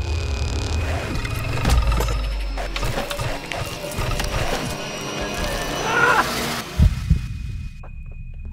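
Horror film sound design: a creature's animal cries and snarls mixed with a loud dramatic score full of sudden hits and low rumble. It ends with a couple of heavy thumps about seven seconds in, then drops away.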